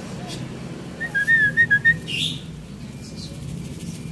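A short warbling whistle: a quick run of wavering notes lasting about a second, starting about a second in, over a steady low hum.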